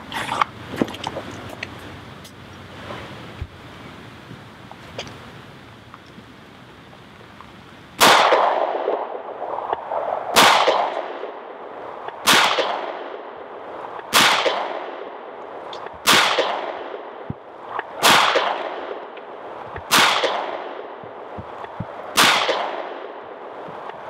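Eight .45 ACP pistol shots from a Para Ordnance Expert Commander 1911, fired slowly and evenly about two seconds apart, each with a long echoing tail. Before the first shot, about eight seconds in, there are only faint handling clicks and rustle.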